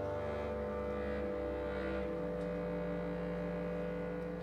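A concert wind band holding sustained chords, the low brass and low reeds prominent underneath. The bass line moves to new notes about a second in and again about two seconds in while the upper parts hold.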